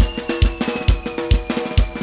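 Live band's drum kit playing a steady beat, the bass drum hitting about twice a second with snare and cymbal over it. A thin high tone slides slowly down in pitch behind the drums.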